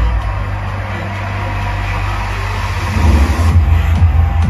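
Film soundtrack played loud through a home theater speaker system and picked up in the room: a steady low drone under a noisy haze, then about three seconds in a club dance beat with heavy bass kicks in.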